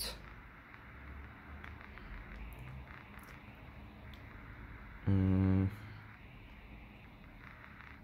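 Faint handling noise of fingers working a small plastic toy figure and its clip-on shirt piece. About five seconds in, a man gives a short hummed 'mm', held at one steady pitch for about half a second.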